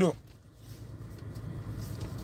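Low, steady rumble of a car, heard from inside the cabin.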